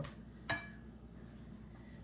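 A single light clink of a metal spoon against the mixing bowl about half a second in, with a brief ringing tail, then only a faint low hum.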